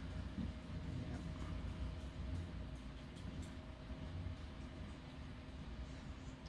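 Steady low room hum with a faint steady tone above it and a few faint ticks.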